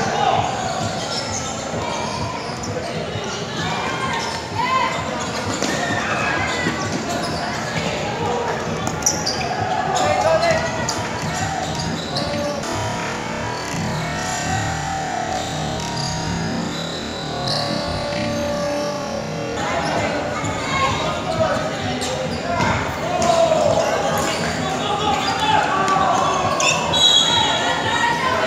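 Indoor futsal play echoing in a large gym hall: the ball being kicked and bouncing on the hard court, short high shoe squeaks, and players and spectators shouting and chattering.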